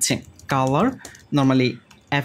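Computer keyboard typing, brief key clicks under a man's speech.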